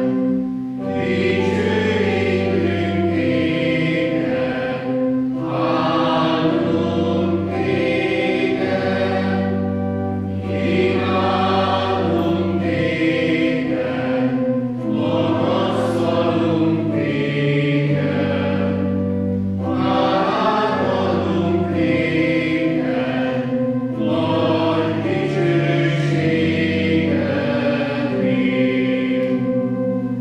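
A choir sings a liturgical hymn with organ accompaniment. The singing comes in phrases of a few seconds over held chords that change every couple of seconds.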